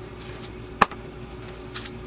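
Paper manuals being handled in a cardboard box: one sharp tap about a second in and a faint brief rustle near the end, over a low steady hum.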